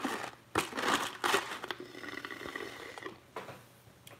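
Drinking through a straw from a paper cup: a few seconds of noisy, crackly sucking in irregular bursts.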